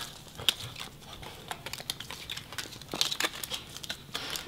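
Small cards and paper tags being picked up by hand off a hard tiled floor, giving a run of quick, irregular light clicks.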